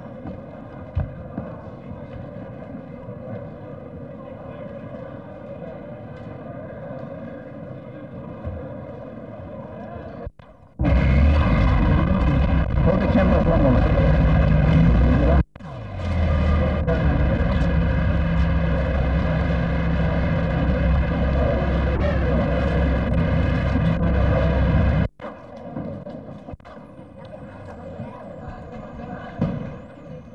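Murmur of a crowd in a large hall. About ten seconds in, a much louder, low rumbling din starts, breaks off abruptly once, resumes and cuts off sharply near the end, leaving the quieter murmur again.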